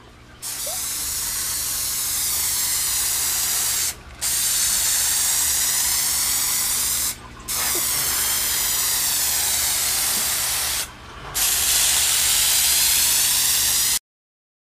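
Aerosol rattle can of Rust-Oleum custom gold paint spraying in four long passes of about three seconds each, with brief pauses between them, as a light coat goes onto a car hood.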